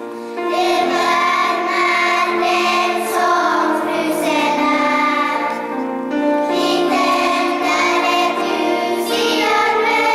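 A children's choir singing a song together, holding long notes; after a brief dip the singing picks up again with a new phrase about half a second in.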